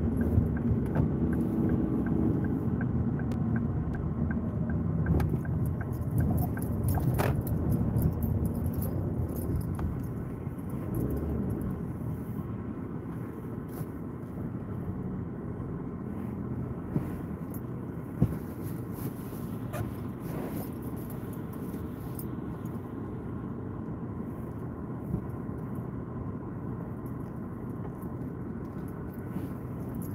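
Car cabin noise: the low rumble of the engine and tyres on a wet road as the car drives slowly, easing off after about ten seconds as it slows and pulls in. A light, regular ticking runs through the first several seconds, and a few sharp clicks come later.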